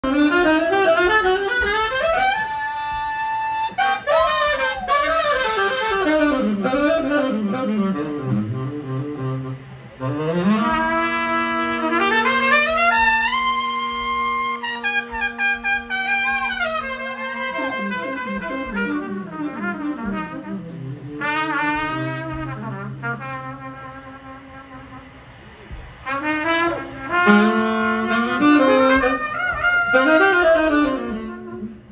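Live tenor saxophone and trumpet playing a horn line together in a soul and roots-rock band. A long held note comes in the middle, then a quieter stretch, before the horns come back in strongly near the end.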